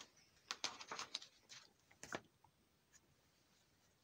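Faint handling of plastic card-sleeve pages in a ring binder: a few light clicks and rustles in the first two seconds, then near silence.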